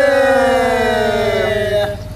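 A singer holding one long sung note that slides slowly down in pitch and breaks off near the end, closing a line of a Rajasthani Meena geet folk song.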